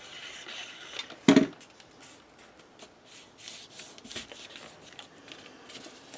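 Paper and cardstock being handled on a countertop: soft rustling and sliding as a paper fold-out is pressed down and tacked in place, with one brief thump about a second in.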